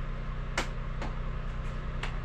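Steady low hum of a running generator and space heater, with two short sharp clicks about half a second and a second in.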